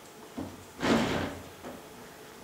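Plastic stacking chair knocking and then scraping on a stage floor as someone gets up from it: a small knock, then a louder scrape of about half a second.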